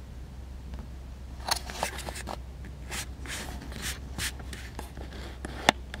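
Handling noise on a Canon EOS Rebel SL2/200D body, heard through the camera's built-in microphones: fingertips rubbing on the body and pressing its buttons and dial, giving scattered clicks and scrapes with one sharp click near the end. A steady low hum runs underneath.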